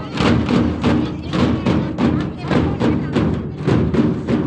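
Rhythmic drumming, about two to three beats a second, with people talking over it.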